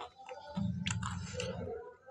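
A man chewing a mouthful of fried pakora with his mouth closed, picked up close by a clip-on microphone as a muffled low chewing, with a few crisp crunches about a second in.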